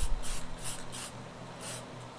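Short bursts of spray paint hissing from an aerosol can, about five quick sprays in two seconds, with a low bump at the start.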